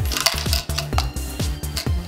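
Background music with a steady beat, over light clicks and clinks of small metal charms and a bead moving in a clear plastic container as it is tipped and handled.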